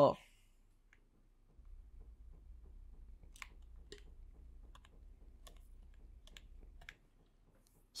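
Faint keystrokes on a computer keyboard: a string of digits typed one key at a time, from about a second and a half in until shortly before the end.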